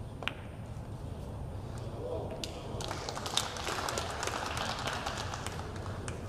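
One sharp click near the start, then scattered audience clapping building from about three seconds in.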